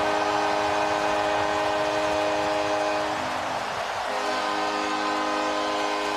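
Hockey arena goal horn blasting a chord of several steady tones over a cheering crowd, the signal of a home-team goal. Part of the chord drops out and shifts a little past the middle.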